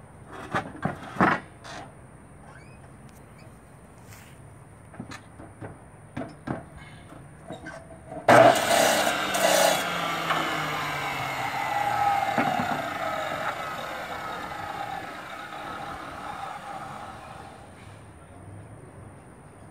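Iron balusters clank and knock as they are set in a DeWalt abrasive chop saw fitted with a metal-cutting blade. About eight seconds in, the saw starts suddenly and cuts through the iron for a couple of seconds. Its motor then winds down, the hum falling in pitch and fading near the end.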